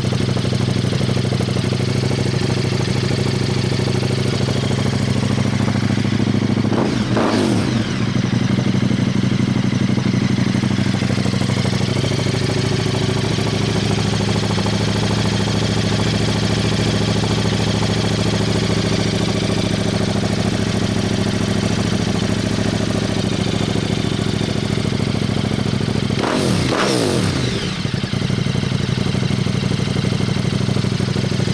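KTM 1290 Super Duke R's V-twin engine idling through an Akrapovic Evo exhaust with the baffle removed. Two quick throttle blips, one about seven seconds in and one near the end, each rising and then falling back to idle.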